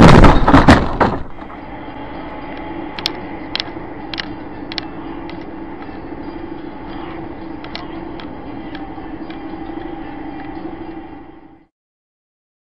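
A loud, harsh burst for about the first second, then the steady drone of a vehicle driving on a road heard from inside, with scattered sharp clicks, cutting off shortly before the end.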